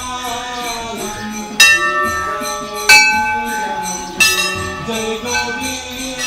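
Music with a bell struck three times, evenly and a little over a second apart, each strike ringing on and fading.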